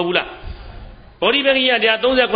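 Speech only: a man preaching a Buddhist sermon in Burmese. He pauses for about a second, then goes on.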